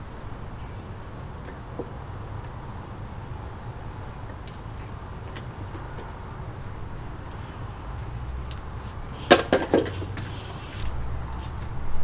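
Plastic squeeze bottle being handled: a quick cluster of sharp plastic clicks and crackles about nine and a half seconds in, with a few faint ticks before it, over a steady low background rumble.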